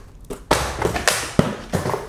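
Cloth rustling as a fabric drawstring bag is handled and shaken, starting about half a second in, with a few sharp taps, the loudest a little after halfway.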